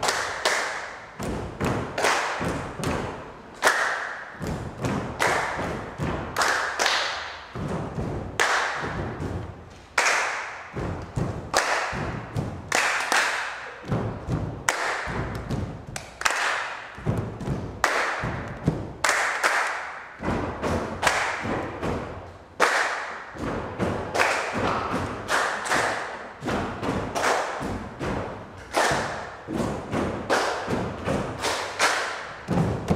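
A group of people stamping and stepping barefoot on a wooden floor in a steady, repeated rhythm, making thuds as a body-percussion exercise.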